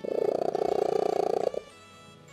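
A domestic cat purring very loudly for about a second and a half, then stopping. It is the record-holding loudest purr, as loud as a vacuum cleaner.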